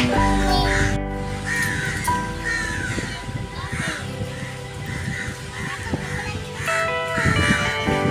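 Crows cawing repeatedly over background music with held, steady tones.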